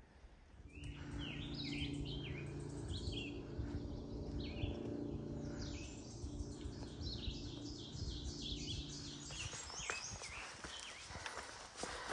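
A songbird singing in woodland, short high chirping phrases repeated over and over, over a steady low hum that stops about nine seconds in. Footsteps on a forest dirt trail come in near the end.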